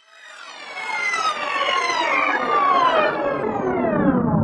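Electronic music intro: a dense cluster of synth tones fades in from silence and slides steadily down in pitch over several seconds, growing louder as it falls.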